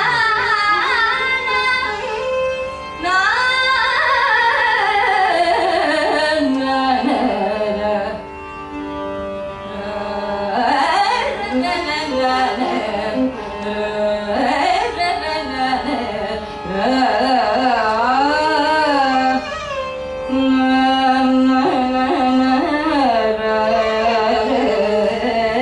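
Female Carnatic vocalist singing an alapana in raga Todi: unmetered, wordless improvisation, the voice sliding and oscillating through wide ornamental pitch bends (gamakas) over a steady drone. A softer stretch comes about eight seconds in.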